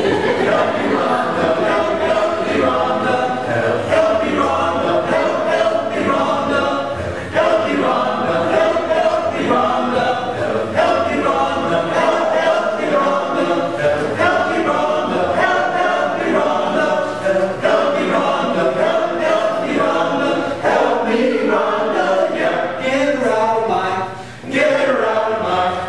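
Men's a cappella chorus singing in close harmony, several voice parts together without instruments.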